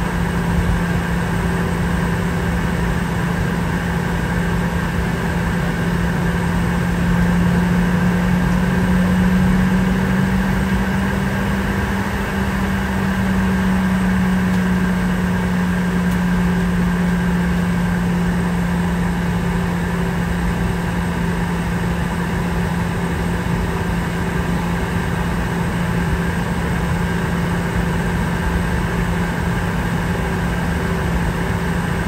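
Inside the cabin of a taxiing Boeing 717: the steady drone of its rear-mounted Rolls-Royce BR715 turbofans at low taxi power, with cabin air noise. The low hum rises a little in pitch and loudness a few seconds in, then settles back.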